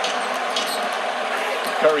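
Basketball dribbled on a hardwood court, a few short bounces over a steady haze of arena noise. A commentator's voice comes in near the end.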